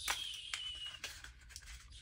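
Cardboard packaging rustling and scraping as small plastic accessories are worked out of it. It opens with a sharp snap and a thin high squeak that lasts about a second, then scattered scratching.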